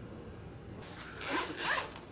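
Zipper on a fabric hard-shell carry case being unzipped, a faint rasp of the running zipper starting just under a second in, with a couple of stronger pulls. It unzips nice and free.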